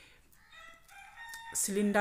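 A faint, distant pitched call about a second long, a held tone like a bird's. Speech starts again near the end.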